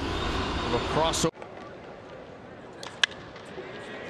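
Ballpark crowd and broadcast noise that cuts off abruptly a little over a second in, giving way to quiet stadium ambience. About three seconds in comes a single sharp crack of a bat hitting a pitched baseball.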